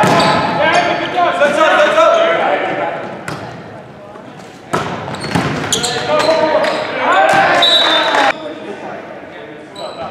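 Volleyball rally in a gymnasium: sharp ball contacts amid shouts and cheers that echo in the large hall. The voices are loudest in the first couple of seconds and again around seven to eight seconds in, with a sharp hit just before five seconds.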